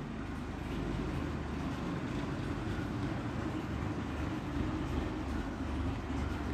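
A steady low rumble of background noise with no clear beginning or end.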